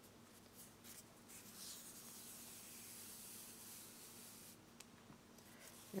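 Faint rubbing of size 10 cotton thread being pulled through the double stitches of a needle-tatted ring as the ring is drawn closed, a little louder for a few seconds in the middle.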